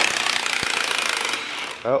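Cordless Milwaukee impact wrench hammering on a stud nut of a rusty Rockwell five-ton axle hub, loosening the nuts to pull the axle shaft. A rapid, steady rattle that eases a little and stops near the end.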